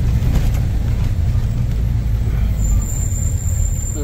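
Tata truck's diesel engine running with a steady low rumble and road noise, heard from inside the cab. A thin, high steady whistle comes in a little past halfway.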